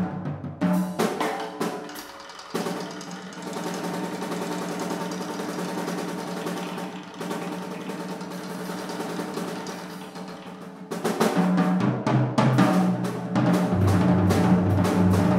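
Jazz drum kit being played: a few loud tom strokes, then from about two and a half seconds a long, quieter, dense roll. Loud tom strokes come back about eleven seconds in.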